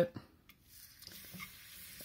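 A thin beef slice coated in soy-sauce and egg dredge goes into a hot oiled frying pan. About half a second in, after a light click, a faint steady sizzle starts.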